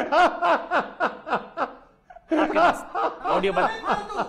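Laughter: a run of short, evenly spaced laughs, a brief pause about two seconds in, then more laughing mixed with talk.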